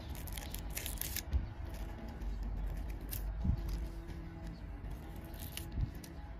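Faint dry crackles and scrapes from metal tweezers plucking withered leaves off succulent rosettes and grating against gritty potting substrate, mostly in the first second or so, over soft background music.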